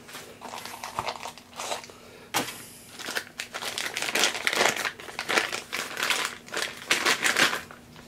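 Clear plastic bag crinkling and rustling in irregular bursts as hands unwrap a tool from it, busiest in the second half, with a sharp click about two and a half seconds in.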